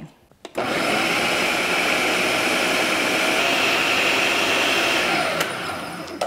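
Ninja food processor grinding fried pork (chicharrón) with onion, green chile and tomato into pupusa filling. The motor starts about half a second in with a steady whir and a high whine, then winds down about five seconds in.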